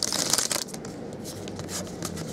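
A stack of freshly opened SP Authentic golf trading cards being flipped through by hand: a quick run of crisp papery slaps and rustling in the first half second or so, then fainter scattered clicks as single cards are moved.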